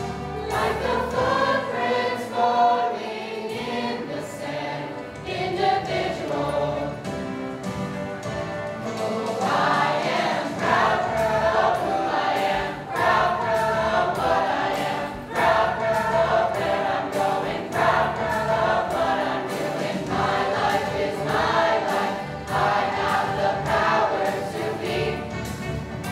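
A choir of teenage students singing, the voices growing fuller about a third of the way through.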